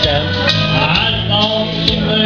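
A man singing a slow country song into a microphone over an accompaniment with guitar and a steady beat.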